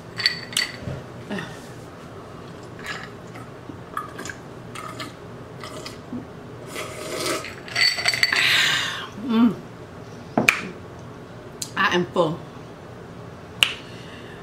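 Ice cubes clinking in a glass of water as it is lifted and drunk from, with a ringing clink near the start and again around eight seconds in, and sipping and mouth sounds between.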